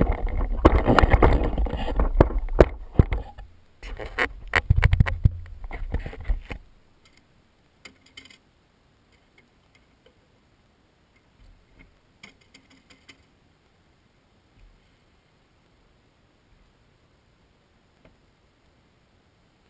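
Loud rumbling, scraping handling noise on the camera as it is picked up and moved, in two stretches of a few seconds each. After that come a few faint taps and scrapes from a stick poking the burning shoe in the metal bucket.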